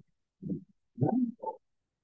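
A man's voice making a few short, low murmured sounds, hesitations between sentences rather than clear words.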